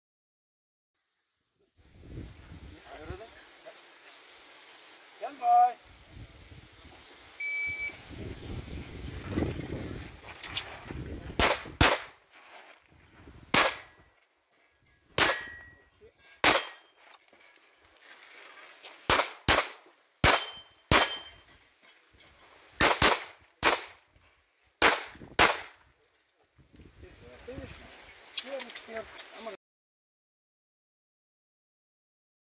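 A short high shot-timer beep about eight seconds in, then a string of about fifteen handgun shots over some fifteen seconds, fired in pairs and small groups, with a few followed by a brief metallic ring of steel poppers being hit.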